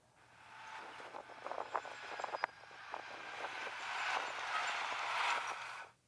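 Outdoor road ambience: a noise that fades in and swells steadily over several seconds, like road traffic drawing near, with a few light clicks around two seconds in, then fades out just before the end.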